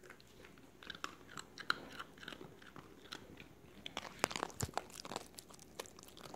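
A small dog crunching and chewing a treat, in irregular crunches that come thickest and loudest about four seconds in.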